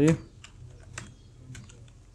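Computer keyboard keys being typed: a handful of separate, irregularly spaced keystroke clicks as a variable name is entered in a code editor.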